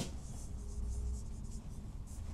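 Marker pen writing on a whiteboard: faint, irregular scratchy strokes.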